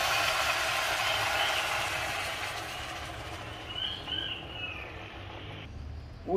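Water poured from a kettle into a hot soapstone pot of frying cow's feet, hissing and sizzling as it hits the hot meat and stone, loudest at first and slowly dying down before cutting off suddenly near the end.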